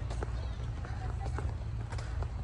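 Faint voices of people talking in the background over a steady low rumble, with a few short knocks scattered through.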